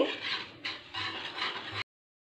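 A spoon stirring and scraping a thick yogurt-and-spice marinade around a kadai, a rough, irregular scraping that cuts off suddenly near the end.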